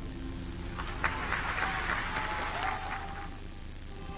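Audience applauding, fairly soft, swelling about a second in and thinning out near the end.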